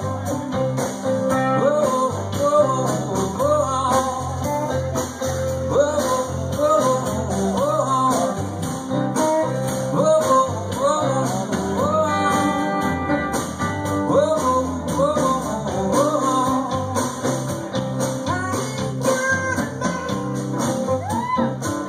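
Live band playing a bluesy rock-and-roll song on electric guitars, electric bass and drums, with a lead line that slides up into its notes.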